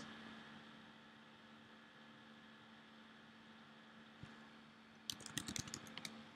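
Near silence with a faint steady hum, a single click about four seconds in, then a quick run of computer keyboard keystrokes near the end as a short word is typed.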